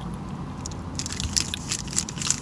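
Chewing a bite of a dry, crumbly fudge brownie protein bar, with crisp crackling clicks starting about a second in.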